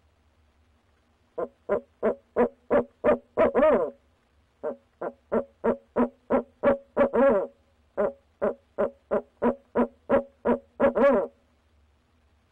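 Male barred owl hooting close by in three quick runs of short hoots, about three a second, each run ending in a longer, drawn-out note.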